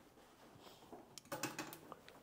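Faint handling clatter: a quick run of small clicks and rattles in the second half as a handheld heat gun is picked up off the workbench.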